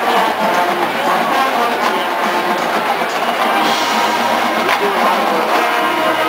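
College marching band playing on the field: brass carrying sustained chords and melody over a drumline, with sharp drum strokes here and there.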